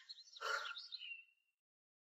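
Birds chirping and twittering in a short burst of about a second, with quick high warbling notes.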